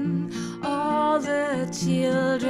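A woman singing with acoustic guitar and cello accompaniment; her sung phrase comes in about half a second in, over steady low string notes.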